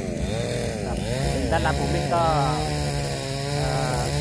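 A man talking over the steady low hum of a small engine running continuously.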